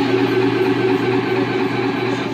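Live band playing loud, with electric guitar and bass making a dense, sustained, distorted wash over a held low note.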